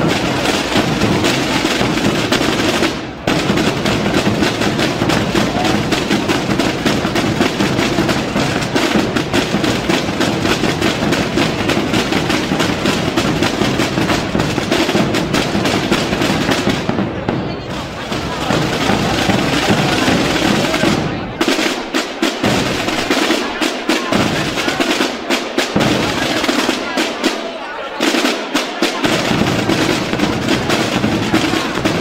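Aragonese-style drum ensemble of snare drums (tambores) and large bass drums (bombos) playing a fast, dense rolling rhythm, with a brief stop about three seconds in and short breaks again past the middle. In the second half the deep bass-drum strokes drop out and come back several times.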